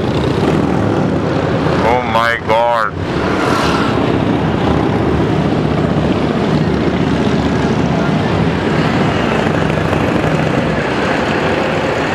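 Motorcycle engine running at a steady pace while riding, under a constant rush of wind and road noise. A voice speaks briefly about two seconds in.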